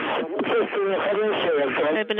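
Speech only: a voice over a narrow-band, radio-like link, a flight-control call during a rocket launch.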